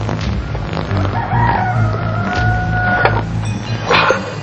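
A rooster crowing once: one long call of about two seconds, starting about a second in with a short rise, then holding steady before cutting off, over low background music.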